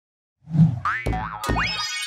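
Animated-logo sound effects: after about half a second of silence, a low thud, a run of cartoon boings with rising pitch glides and two sharp knocks. Near the end a bright chime starts ringing.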